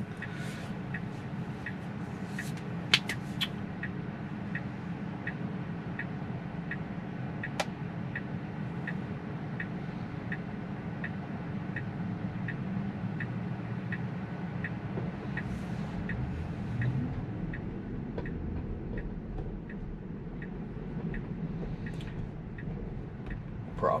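Tesla turn-signal indicator ticking evenly, a little under two ticks a second, over the steady low hum of the car's cabin. The signal was switched on by Full Self-Driving ahead of a turn. A few sharp clicks sound near the start.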